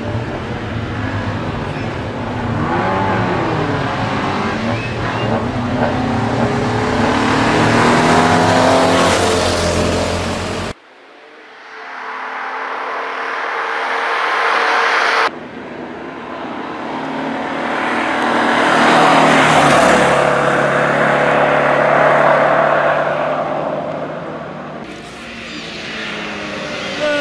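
Alfa Romeo Alfasud Sprint's flat-four boxer engine revving hard under racing load, its pitch climbing and dropping with gear changes as the car comes through the bends. It grows louder on two passes, each time peaking and fading. The sound changes abruptly twice where shots are cut, about ten and fifteen seconds in.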